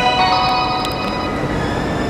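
Station platform departure melody in chime-like mallet tones, its last notes ringing and held, over the steady background noise of the stopped train and platform.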